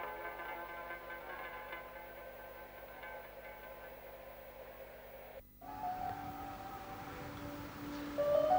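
Quiet background music of sustained held notes, fading down, breaking off briefly a little past halfway, then going on with fewer held notes.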